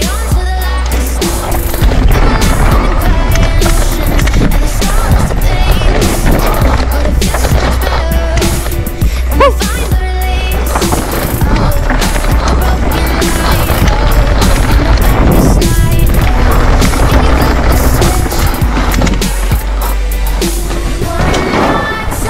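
Music with a heavy bass line over the sound of a mountain bike riding fast down a dirt trail: knobby tyres rolling and rattling over roots and rock, with frequent knocks from the bike bouncing over rough ground.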